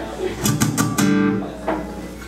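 Acoustic guitar strummed a few quick times, then a chord left ringing about a second in that fades out, with one more light stroke near the end.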